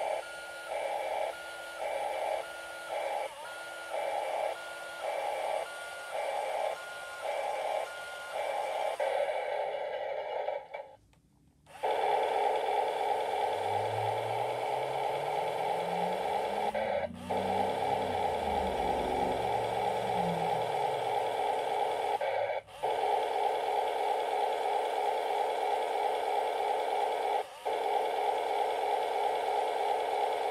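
Electronic sound effects from a Road Rippers toy tractor's built-in speaker. For the first nine seconds a beep repeats about one and a half times a second. After a short break a steady buzzing electronic sound takes over, with a lower sound rising and then falling under it for several seconds around the middle.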